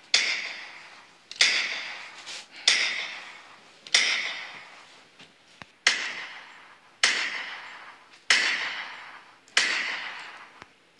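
Gunshot sound effects in a pretend shootout: eight shots at a steady pace, about one and a quarter seconds apart, each sudden and fading away over about a second.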